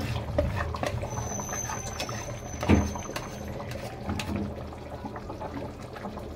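Liquid poured from a bowl into a kadhai of simmering chicken curry, which bubbles and crackles, with one sharp knock a little under three seconds in.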